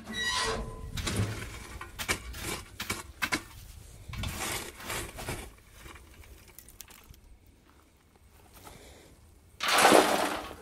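Metal shovel scraping and scooping hot wood coals out of a firebox, with scattered clinks and scrapes. Near the end a loud rush as a shovelful of coals is dumped into a galvanized metal washtub.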